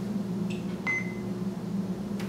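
Electric motor of a motorized projection screen humming steadily as the screen lowers, with a click and a short high beep about a second in.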